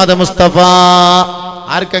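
A man's voice chanting a drawn-out devotional refrain, holding one long note about half a second in, over a steady low hum.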